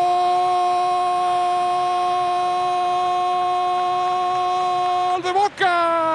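A football commentator's drawn-out goal call: one long "gooool" shout held on a single steady note for about five seconds, breaking into rapid words near the end.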